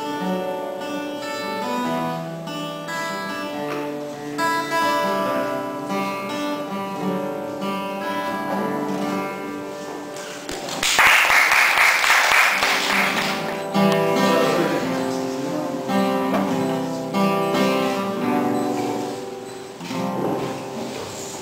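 Cutaway acoustic guitar played solo, picked notes and chords in a steady melodic line. A loud burst of noise lasting a couple of seconds comes about eleven seconds in.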